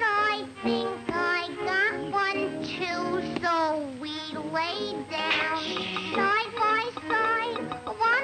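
High, girlish cartoon voice singing a song over musical accompaniment.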